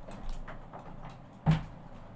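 A door being opened, with one sharp click about one and a half seconds in.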